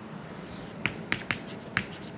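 Chalk writing on a chalkboard: the chalk taps against the board in four sharp clicks during the second half, starting a little under a second in.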